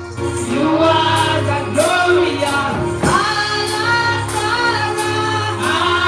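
Live gospel praise singing, led by a woman's voice through a microphone, with other voices joining. Under it runs sustained instrumental backing with a steady percussion beat.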